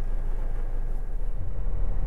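Steady low rumble of a car heard from inside its cabin: engine and road noise.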